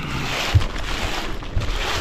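Wind rushing over the microphone in a steady noisy haze, with a brief low thump about half a second in.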